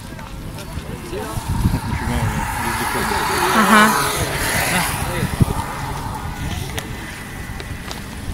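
Background voices of people on a beach promenade, while a large-wheeled skateboard (mountainboard) rolls past on the tarmac, loudest about halfway through.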